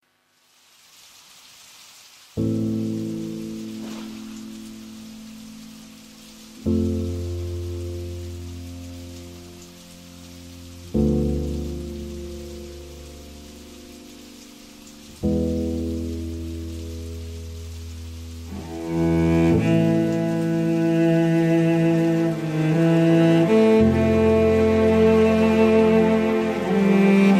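Steady rain falling, under the instrumental introduction of a slow Vietnamese ballad. Four deep chords come in about every four seconds, each fading away. From about two-thirds of the way through, a fuller, louder arrangement with sustained higher melody notes builds up.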